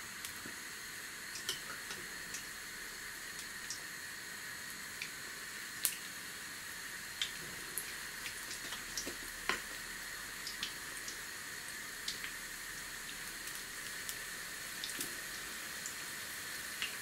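Gram-flour pakora fritters frying in oil in a frying pan: a steady, gentle sizzle with scattered small pops and crackles. The cook judges the oil not yet fully hot.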